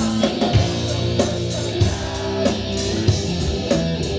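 Live rock band playing loudly: electric guitar chords over bass and a drum kit.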